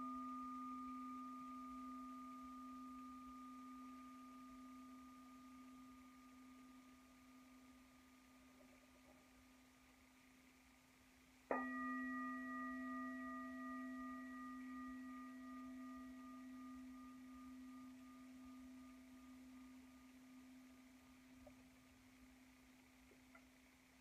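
A meditation bell rings out from a strike just before, its clear tone fading slowly. It is struck again about halfway through and left to ring and fade, marking the start of the meditation.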